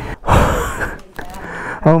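A man's heavy, breathy exhale, a sigh of relief after a fright, lasting most of a second; quieter breathing follows until he starts to speak near the end.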